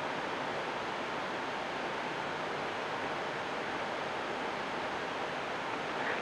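Steady, even hiss of the studio recording's background noise, with no other sound in it.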